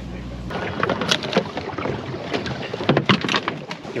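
A steady low mechanical hum inside a boat cabin cuts off about half a second in. Then comes rustling and handling noise on a small open boat, with scattered clicks and knocks from the decoy line and gear and a few muffled words.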